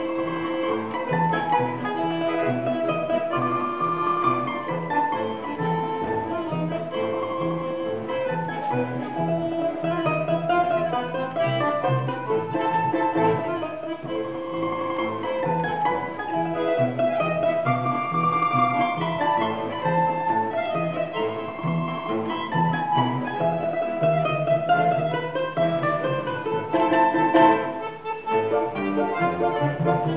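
A Russian folk trio playing a tune: a domra plucks the melody over bayan button-accordion chords and plucked contrabass balalaika bass notes.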